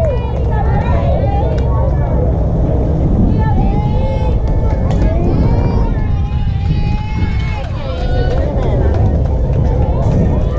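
Several voices calling out and cheering across a softball field, some drawn out in long held shouts, over a steady low rumble of wind on the microphone.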